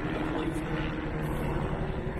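A helicopter flying by, heard as a steady drone.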